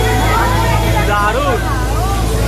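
Crowd chatter: several voices talking over each other, over a steady low rumble.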